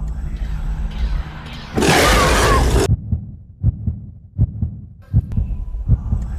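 Dark horror-style intro sound design: a low drone, then a loud burst of hiss about two seconds in that lasts about a second and cuts off sharply. After it comes a run of short, low, uneven pulses.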